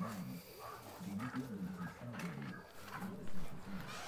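Faint, muffled low-pitched voice talking in the background, words not made out.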